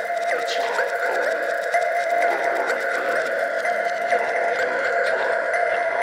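A breakdown in an electronic dance music set: held synthesizer tones with a small pitch blip recurring about twice a second, and no bass or kick drum.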